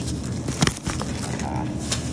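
Groceries being handled in a wire shopping cart: a sharp knock a little over half a second in and a lighter click near the end, over steady store background noise with a low hum.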